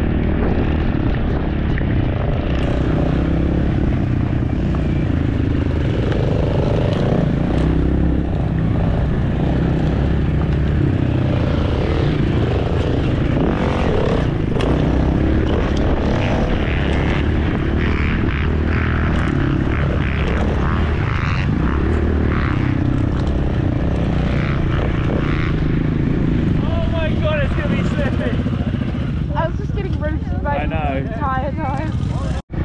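Dirt bike engine running steadily while riding, a continuous engine drone with rushing noise over it.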